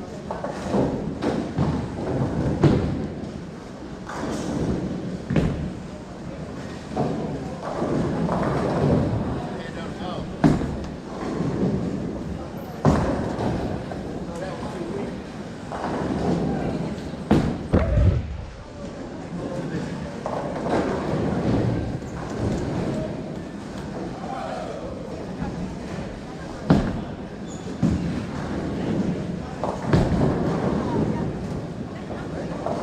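Bowling alley din: ongoing background voices with a few sharp thuds of bowling balls landing on the lanes and striking pins, the heaviest a little past the middle.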